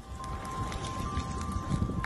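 Wildfire burning through brush and fallen wood, a steady low rumble with wind buffeting the microphone and a few faint crackles. Two steady high tones sound over it, a second one joining about a second in.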